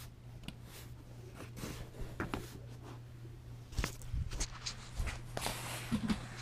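Handling noise from a camera being picked up and moved: soft rustling and scattered light knocks, a few sharper near the end, over a steady low hum.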